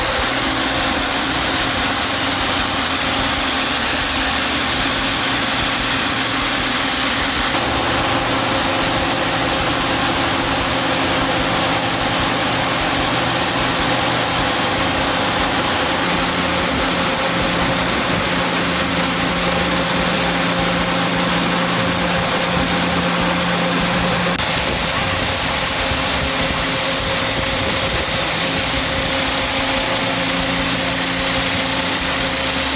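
Truck-mounted high-pressure water-jet runway rubber and paint removal unit running steadily: the truck's engine and pump drone under a continuous hiss of water jets and vacuum recovery.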